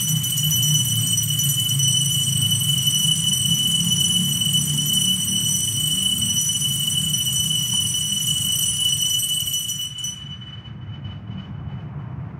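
Altar bells ringing steadily at the elevation of the consecrated host, signalling the consecration. The bright ringing cuts off suddenly about ten seconds in.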